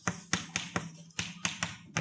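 Chalk writing on a blackboard: a quick run of sharp taps and short scrapes as each stroke lands, about five a second.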